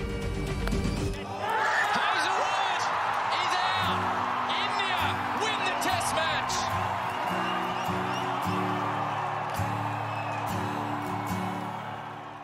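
Cricket stadium crowd breaking into a loud roar about a second in, with shrill whoops and shouts, over background music with long held low notes; both fade out near the end.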